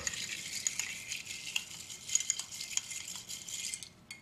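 Long bar spoon stirring crushed ice and liquid in a glass tumbler: a continuous light, high clinking and crunching of ice against the glass.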